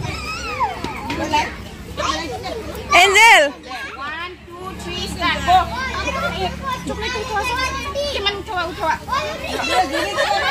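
Young children's voices chattering and calling out, with one loud high-pitched shout about three seconds in.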